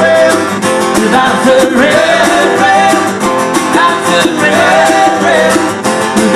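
Live acoustic band performance: a strummed acoustic guitar keeps up a steady rhythm while a melody line bends and slides over it.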